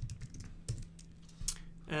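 A few separate keystrokes on a computer keyboard, typing the command that quits the Neovim editor.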